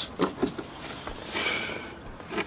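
Hard plastic jack-compartment cover being worked loose and lifted out of a van's doorstep: a few light knocks, then a longer scraping rustle in the second half.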